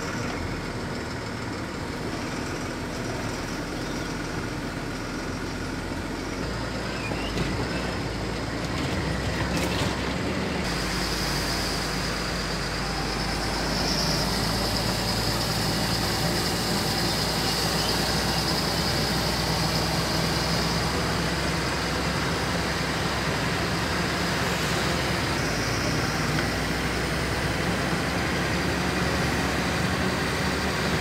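Cabin noise of a moving vehicle: steady engine and road noise, growing louder about ten seconds in.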